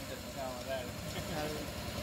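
Electric motor of honey bottling machinery running with a steady, low pulsing hum while the filler dispenses honey into a glass bottle, with faint voices behind it.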